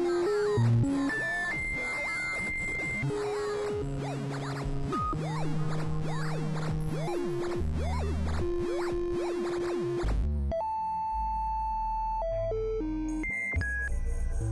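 Experimental synthesizer music: layered held tones step between pitches every second or so while many short gliding swoops run above them. About ten seconds in, the texture thins to sparse high tones stepping in pitch over a low bass drone.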